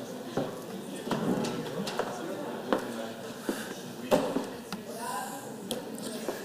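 Indistinct chatter of people talking in a large hall, broken by scattered sharp knocks and clicks, about half a dozen of them.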